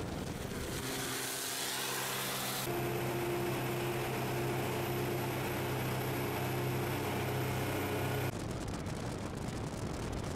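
Cadillac Gage V100 armoured car under way, its engine a steady drone with a strong hum as heard inside the cab. It cuts suddenly near the end to rushing wind and road noise along the outside of the vehicle.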